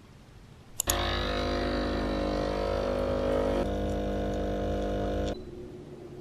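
Espresso machine's pump humming steadily as it pulls a shot into a mug. It starts with a click about a second in, its tone shifts partway through, and it cuts off sharply near the end.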